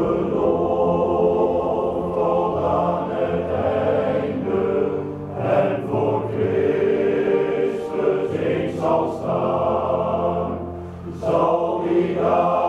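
Men's choir singing in harmony with sustained notes. Near the end the sound briefly drops off between phrases before the voices come back in.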